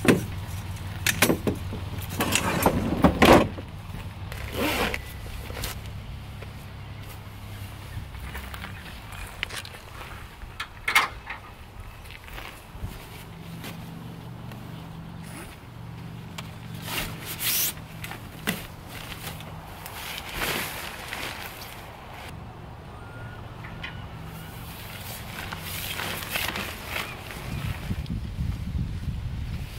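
Aluminium tent poles and stuff sacks handled on a pickup truck's tailgate: a run of knocks and clatters in the first few seconds, then scattered single knocks and rustles, over a steady low hum.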